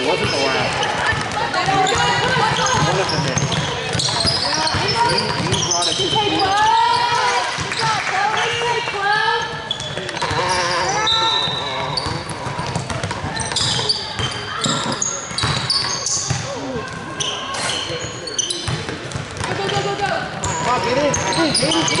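Basketball bouncing on a hardwood gym floor during live play, with voices calling out across the court, all echoing in a large hall.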